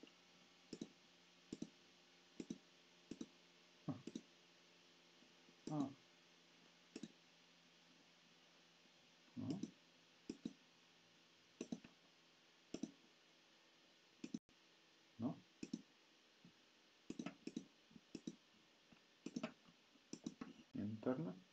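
Sparse single clicks from a computer keyboard and mouse, roughly one a second with irregular gaps, over a faint steady hum.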